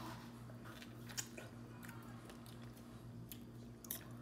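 Pineberries being bitten into and chewed: faint, soft mouth clicks a few times over a steady low hum.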